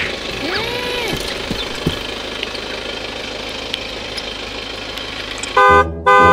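Steady outdoor hiss of a car running, with a couple of rising-and-falling cartoon whistle effects in the first second. Near the end a loud horn honk with several pitches sounds, broken off briefly and then starting again.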